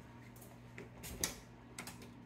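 Light, irregular clicks of footsteps on luxury vinyl plank flooring, over a faint steady low hum.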